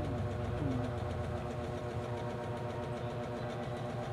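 Steady low hum of a running motor, even in level throughout.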